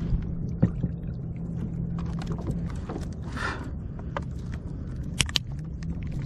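Sharp clicks and knocks of pliers and tackle against the plastic kayak while a hook is worked out of a mahi-mahi's mouth, over a steady low rumble. A short hiss comes about three and a half seconds in.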